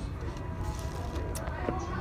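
Faint background music with a few held notes over a steady low room hum, with a few light clicks.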